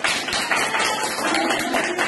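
A small group clapping unevenly, with voices calling out over the applause.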